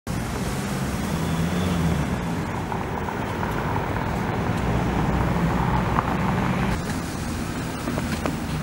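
Steady low rumble of motor vehicle engines and street traffic, with a change in the sound just before the end.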